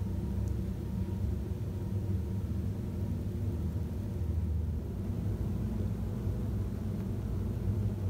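A steady low hum that does not change, with no distinct knocks or clicks.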